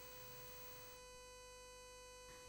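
Near silence with a faint, steady electrical hum and thin tone.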